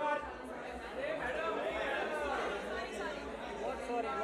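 Chatter of several voices talking over one another, with no clear words. A low rumble comes in underneath at the very start.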